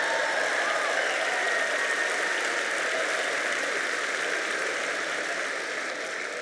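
Large arena audience applauding and laughing in one steady wash of clapping that eases slightly toward the end.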